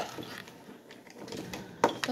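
Crayons and markers rattling and clicking against each other and the sides of a ceramic mug as a hand rummages through them, with one sharper click near the end.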